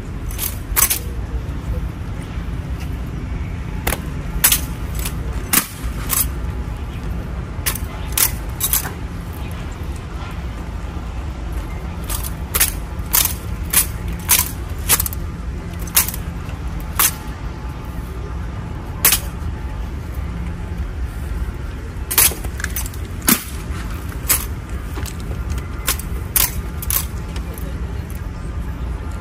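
Honor guard rifle drill: sharp slaps and clacks of gloved hands striking and catching wooden-stocked M1 Garand rifles with fixed bayonets, with metallic clinks, coming in irregular clusters of two to five. A steady low rumble of wind and distant background noise runs underneath.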